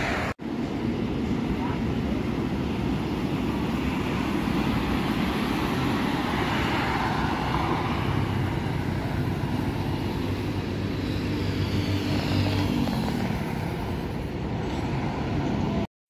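Highway traffic: motor vehicles passing on the road with steady engine and tyre noise. A deeper engine drone is strongest about eight to thirteen seconds in.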